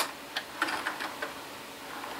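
Light plastic clicks of a small LEGO vehicle being rolled by hand over LEGO road plates and their speed humps. One sharp click comes at the start, followed by a few faint ticks in the first second.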